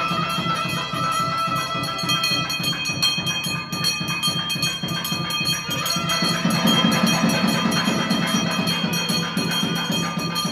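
Devotional temple music with steady ringing tones and quick, even percussion, including bells and tambourine-like jingles, accompanying the waving of the aarti lamp.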